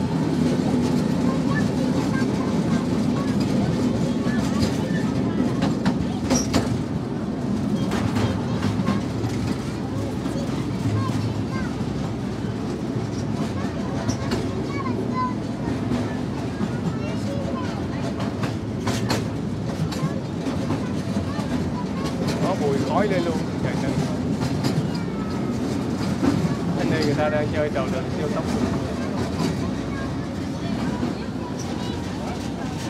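Small open-carriage amusement-park train running, heard from inside a carriage: a steady low rumble with a few sharp clicks and knocks.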